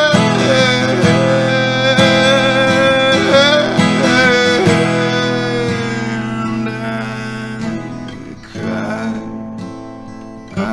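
A man holds a long sung note with a slight waver over a strummed acoustic guitar. The note fades away by about eight seconds in, and a fresh guitar strum starts near the end.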